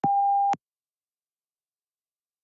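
A single electronic beep of one steady pitch, lasting about half a second: the PTE exam software's start tone, signalling that recording of the spoken answer has begun.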